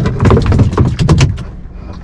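Speckled trout flopping and slapping against the plastic kayak deck while being held down by hand: a quick, irregular run of knocks with low rumble that dies away after about a second and a half.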